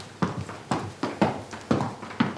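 Footsteps of hard-soled shoes on a hard floor, a steady walking pace of about two steps a second, each step a sharp click.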